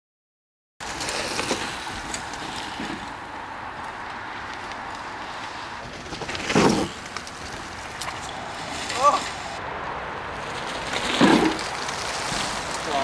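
Dead silence for the first moment, then steady outdoor hiss on the camera microphone, broken by a few brief loud voice sounds, short shouts or calls, about six and a half, nine and eleven seconds in.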